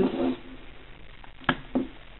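Ink markers set down on a wooden desk by hand, with one sharp knock about one and a half seconds in and a fainter one just after.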